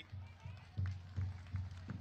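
Faint low thumps in an uneven beat, about three a second, with a few soft clicks over them.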